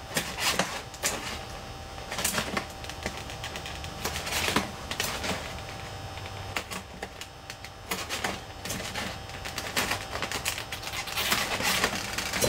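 Hands pulling strips of tape across a Depron foam tube and rubbing them down, giving irregular crackly rustles, scratches and small taps.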